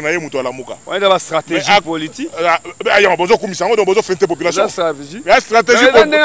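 Only speech: a man talking continuously, with a faint steady high-pitched whine underneath.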